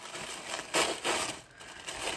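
Packaging wrapping crinkling and rustling as it is pulled open by hand, loudest for about half a second in the middle.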